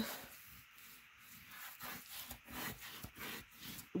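Bone folder rubbing back and forth over paper, burnishing a freshly glued panel down onto the card: faint, repeated scraping strokes.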